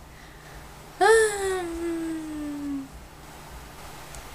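A baby's single drawn-out cry. It starts suddenly about a second in and slides slowly down in pitch for about two seconds before it stops.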